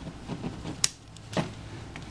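Small clicks of plastic parts being handled inside a disassembled Samsung TL220 compact camera as its flex cables are worked free of their clamps. There is one sharp click a little under a second in and a softer click about half a second later.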